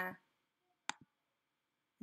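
A single sharp computer mouse click with a softer second click just after it, about a second in, as a Photoshop layer's visibility is toggled.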